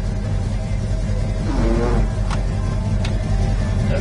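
Car radio playing music in the cabin of a 1967 Pontiac GTO, over the steady low hum of the car's running 400 V8. Two sharp clicks come in the second half.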